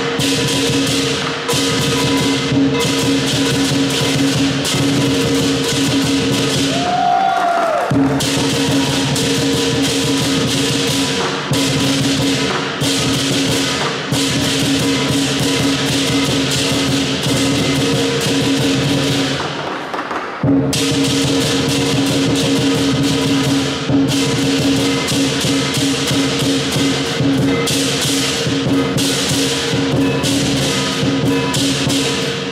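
Southern lion dance percussion: a large Chinese drum with clashing cymbals and a gong, played loudly without a break to accompany the lion's moves. The cymbals drop out briefly twice, about a quarter and two-thirds of the way through.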